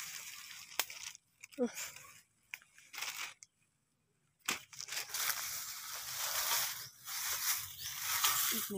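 Crackling and rustling of dry bamboo leaves and twigs as a person pushes through a bamboo thicket. About halfway, after a brief drop-out, there is a dense steady rustle, with a plastic bag rustling as a bamboo shoot is dropped in.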